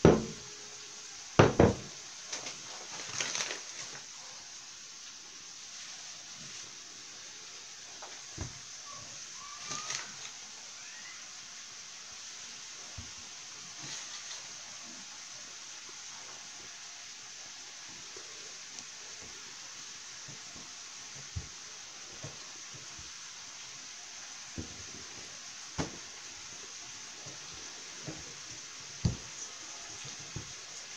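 Kitchen handling sounds of pizza dough being taken from a glass bowl and worked on a table: a few sharp knocks near the start, then scattered soft taps and thumps over a steady faint hiss.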